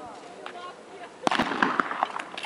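A starter's pistol shot about a second and a quarter in, sending off a speed-skating pair, followed by a short burst of sharp noise.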